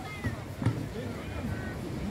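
Several voices of onlookers and fighters talking over one another, with one sharp knock about two-thirds of a second in.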